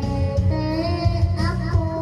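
A young boy singing karaoke into a microphone over a music backing track, his voice carrying a held, wavering melody above a steady bass beat.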